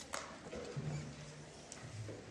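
Quiet auditorium room noise between band pieces: a sharp knock just after the start, a few fainter clicks and rustles, and a faint low drone in the second half.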